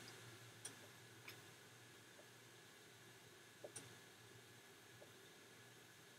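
Near silence: room tone with a few faint, short clicks, single ones about a second apart early on and a close pair near the middle.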